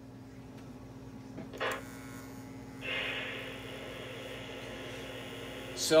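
Lionel Reading T-1 model's RailSounds 1 system powering up. About three seconds in, its steam-locomotive idle sound comes on as a steady hiss, over a steady electrical hum.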